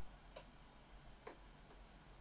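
Near silence with a few faint ticks as fingertips press a thin self-adhesive metal plate onto the plastic back of a battery charger.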